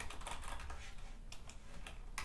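Typing on a computer keyboard, a run of quick keystrokes.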